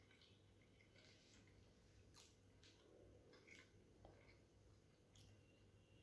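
Near silence: room tone with a few faint, short mouth clicks and smacks of chewing food.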